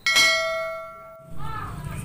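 A single bright bell-like ding, struck once and ringing out, fading over about a second; it matches the hand-wipe cut and sounds like an added transition sound effect. After a cut, steady outdoor background noise and a girl's voice come in near the end.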